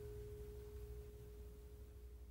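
The end of a song dying away: a guitar chord has just stopped, and one sustained note lingers, fading slowly toward silence.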